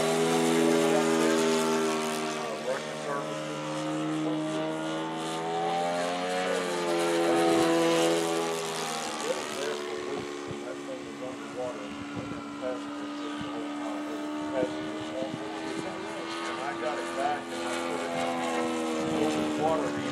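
A radio-controlled P-51 Mustang model's O.S. 95 engine and propeller, flying overhead as a steady pitched drone. Its pitch rises and falls as the plane passes and changes speed, then settles lower about nine seconds in.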